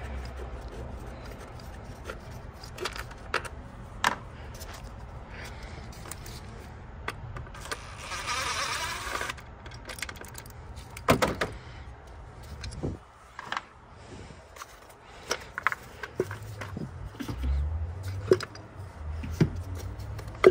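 Cordless power ratchet running for about a second and a half near the middle, spinning out ignition-coil hold-down bolts, amid scattered metal clicks, taps and knocks of tools and parts being handled.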